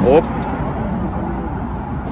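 Steady low rumble of street traffic mixed with power wheelchairs rolling over sidewalk paving stones and a drainage channel.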